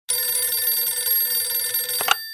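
A telephone bell ringing steadily in a fast trill, starting abruptly.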